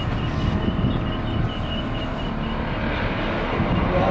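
Steady outdoor background rumble, like road traffic, with a faint quick high chirping repeated several times a second over it.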